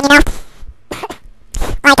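A person's voice: halting speech with a short cough in the middle.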